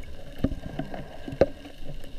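Water sloshing around a camera held in the water, with irregular knocks from handling; the loudest knocks come about half a second and a second and a half in.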